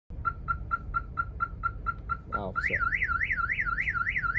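Car alarm going off: a quick series of short beeps, about four a second, then a warbling wail that rises and falls about four times a second, over a low engine and road rumble.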